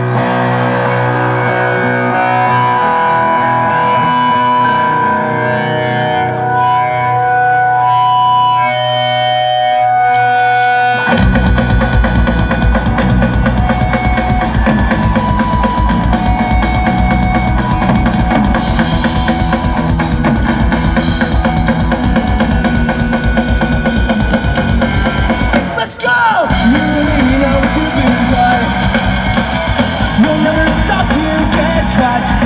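Pop-punk band playing live: a guitar intro of held, ringing notes, then about eleven seconds in the drums and full band come in loud and fast, with a brief drop in the sound near the end.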